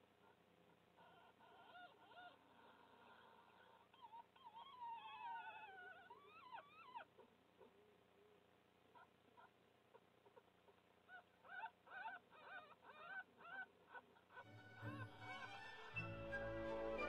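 Newborn red fox cubs squeaking and whimpering faintly, in thin high calls that slide up and down. There is a longer gliding run about five seconds in, and a quick string of short calls later. Music comes in near the end.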